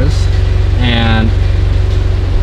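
2013 Scion FR-S's flat-four boxer engine idling through a cat-back exhaust: a steady, loud low pulsing rumble.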